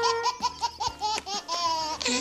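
High-pitched laughter, a quick run of short ha-ha pulses at about five a second.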